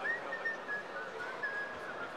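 A person whistling a short run of notes: several brief clear tones that step down in pitch and rise again near the end, over steady background noise.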